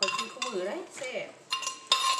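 Clay mortar knocking and scraping against a ceramic plate as papaya salad is tipped out, with sharp clinks about one and a half and two seconds in that ring on briefly. A few words are spoken in the first second.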